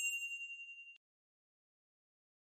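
Notification-bell sound effect: a single high ding that rings on with a slight wavering and stops about a second in.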